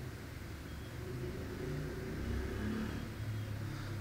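A low background rumble with a faint wavering hum, swelling slightly in the middle.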